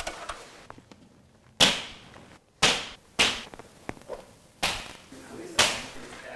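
Chalk line snapped against a drywall wall five times, each a sharp slap with a short fading tail, marking blue layout lines for wall panels.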